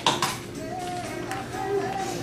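A brief sharp clatter of hard objects knocking together at the start, then background music playing in the room.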